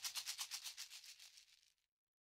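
Faint, rapid shaker-like percussion rattle, about ten strokes a second, dying away and stopping about a second and a half in: the last of the song's music.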